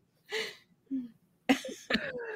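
A person's short cough, followed by a couple of brief small vocal noises.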